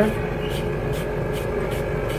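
Benchtop laboratory vacuum pump running steadily, pulling vacuum on an extraction manifold, with an even hum made of several steady tones.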